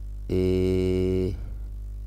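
A man's voice holding a long, level hesitation sound, "eh", for about a second, over a steady low hum.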